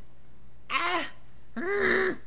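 Two short wordless vocal sounds from a person's voice, the first about two-thirds of a second in and the second near the end, each rising and then falling in pitch, over a faint steady hum.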